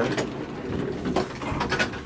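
A run of light, irregular mechanical clicks and rattles over a low steady hum.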